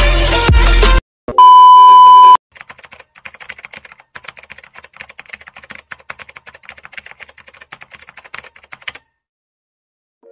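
Background music cuts off about a second in. A loud, steady, high beep follows for about a second. Then rapid, quiet keyboard-typing clicks run for about six seconds and stop a second before the end.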